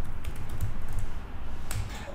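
Typing on a computer keyboard: a rapid run of keystrokes as a short heading is typed.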